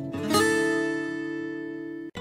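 Background music on acoustic guitar: a chord strummed about a third of a second in, ringing and slowly fading.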